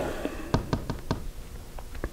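A quick series of light taps on a whiteboard, several in a row and one more near the end, as the board is tapped at the divisor being pointed out.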